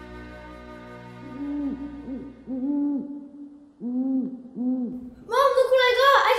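A held music chord fades out in the first second. Then an owl hoots in two runs of short, low hoots, the second run starting about four seconds in. A child's excited voice comes in near the end.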